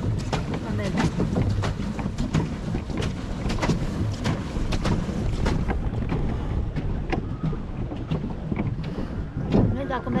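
Wind buffeting the camera microphone on a swan pedal boat, a steady low rumble with many short knocks and splashes from the boat on the water.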